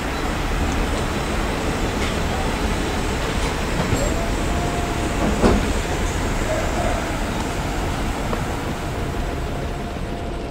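City traffic noise: a steady low rumble of passing vehicles, with a faint whine holding one pitch from about four seconds in and a single sharp click near the middle.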